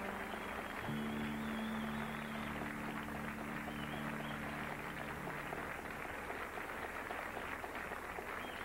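Studio audience applauding as the band's last chord is held and then fades out about five seconds in; the clapping goes on after the music stops.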